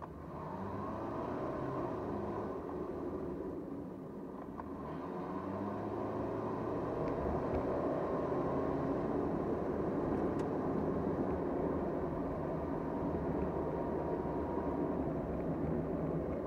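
A car's engine and road noise heard from inside the cabin as it accelerates. There is a whine that rises in pitch twice over the first half, with the sound growing louder, and then a steady cruise.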